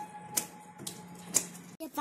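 Sharp clicks or claps about once a second over a faint steady hum, cut off abruptly near the end.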